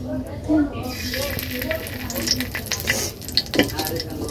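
Bay leaves and a spice paste sizzling in hot oil in a wok. A dense sizzle sets in about a second in, with many sharp crackles and pops.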